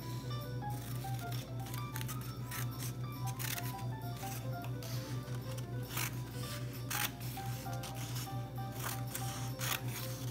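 Scissors snipping slits into construction paper, a short crisp cut every second or so, over background music with a simple melody of short notes and a steady low hum underneath.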